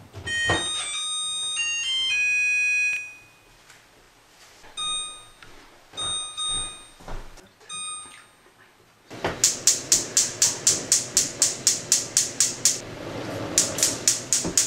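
A gas range's electronic chime plays a short melody of stepped beeping tones, followed by a few single control-panel beeps. About two-thirds of the way through, a burner's spark igniter starts clicking rapidly and evenly, about five clicks a second, over the hiss of the gas burner lighting. The clicking stops briefly and starts again near the end as a second burner is lit.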